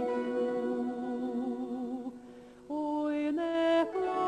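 A woman's voice singing a slow Ukrainian folk song in long held notes with vibrato. The phrase ends about two seconds in, and after a short break the next phrase starts, stepping up in pitch.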